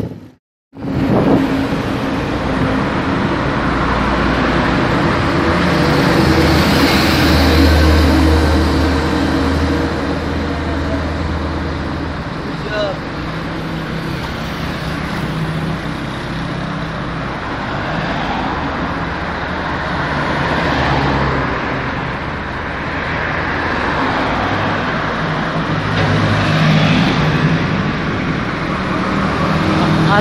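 Roadside traffic on a highway: engines and tyres of passing vans, motor tricycles and trucks, swelling and fading as each vehicle goes by. The sound drops out for about half a second near the start before the traffic comes in.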